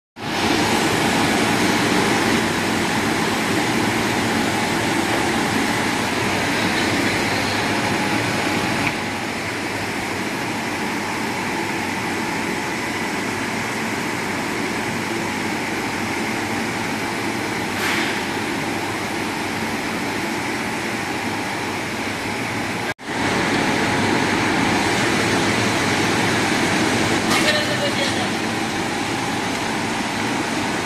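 Ice lolly (popsicle) making machine running, a loud steady mechanical noise with a hiss and a faint hum. It drops out for an instant about 23 seconds in, then carries on.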